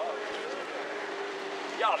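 An engine droning steadily at one held pitch, with a voice breaking in near the end.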